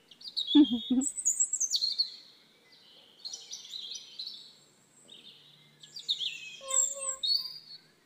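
Birds chirping and calling, with many quick high, sliding notes overlapping throughout. A brief low vocal sound is the loudest thing, about half a second in.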